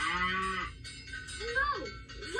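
A cartoon cow mooing once on a TV soundtrack, a short steady moo of under a second, heard through the TV's speaker.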